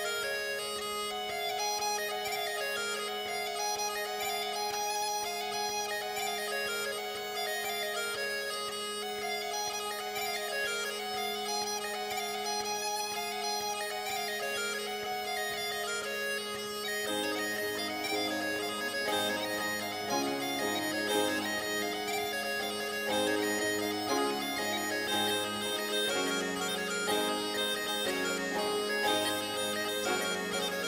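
Bagpipe playing a tune over its steady drones. About halfway through, a lower instrumental accompaniment comes in underneath.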